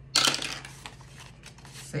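A die dropped into a small dice tower, clattering down through it in a quick run of knocks for about half a second before it settles.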